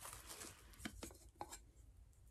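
Near silence broken by a few faint clicks, about three in the second half-second to a second and a half, from a small glass-and-metal music box powder holder being handled.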